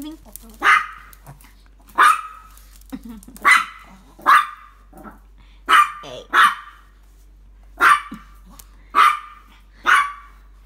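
Shih tzu barking: about eight short, sharp barks at irregular intervals, roughly one every second or so.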